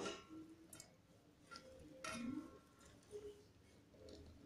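Faint, scattered taps and light scrapes of a stainless steel plate and bowl as chopped vegetables are pushed from one into the other by hand, about five soft knocks in all, some with a slight metallic ring.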